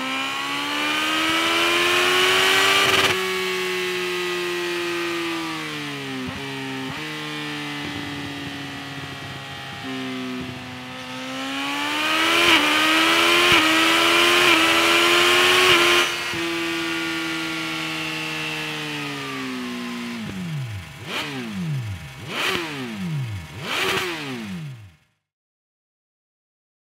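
Suzuki GSX-S 1000's inline-four engine running through an SC-Project CR-T slip-on muffler, revved with the rear wheel spinning. The revs climb and hold, fall back, then rise again in steps about halfway through. Near the end comes a string of quick throttle blips that die away, and the sound cuts off abruptly.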